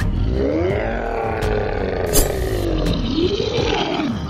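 Monster roar sound effect: a long growling roar that rises and falls in pitch, then a second shorter roar near the end.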